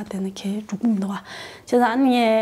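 Speech only: a woman talking in Tibetan.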